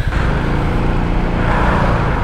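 Zontes 350E scooter's single-cylinder engine running steadily at a crawl through tight traffic, mixed with the steady noise of the vehicles around it.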